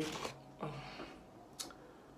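A quiet room with a brief faint murmur from a voice a little after the start, then a single short, sharp click about one and a half seconds in.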